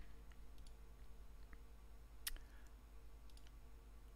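Faint computer mouse clicks while opening a web browser: a few light ticks, with one sharper click a little over two seconds in, over a low steady hum.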